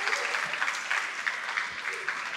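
Audience of schoolchildren applauding, many hands clapping at a steady level.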